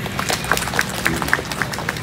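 An audience applauding with irregular, scattered hand claps at the end of a speech.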